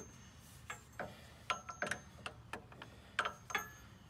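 A dozen or so short metallic clicks and clinks, irregularly spaced and a few ringing briefly, as a hand tool works against the steel of a Jeep's front track bar mount.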